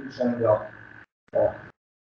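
A man's voice trailing off in low, creaky hesitation sounds, with one short vocal fragment about one and a half seconds in. Between them the sound cuts to dead silence, as a video call's audio gate does.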